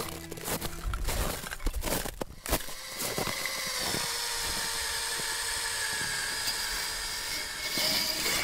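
Helicopter running: irregular knocks at first, then a steady whine with several held tones over a hiss.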